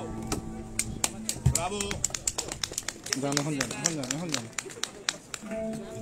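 Voices talking in a pause in the street music, with scattered sharp clicks and taps. A voice rising and falling in pitch comes through about three seconds in.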